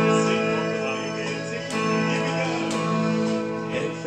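Stratocaster-style electric guitar being strummed, with held chords and a few sharp new strums.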